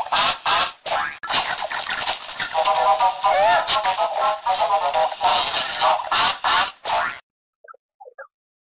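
Heavily effects-processed cartoon audio: warbling, quavering tones over harsh, distorted noise, cutting off abruptly about seven seconds in.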